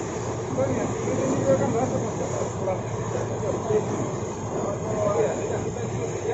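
Steady running noise of a fast passenger ferry under way: engine drone mixed with the rush of water churning in its wake.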